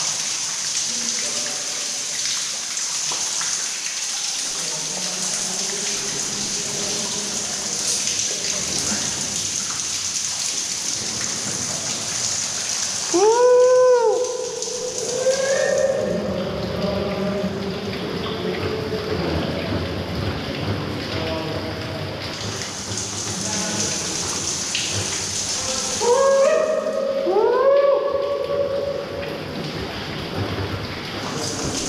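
Steady rush of water falling and splashing inside a rock mine shaft, like heavy rain, the whole way through. About halfway in and again near the end come brief bursts of short pitched sounds that rise and fall, louder than the water.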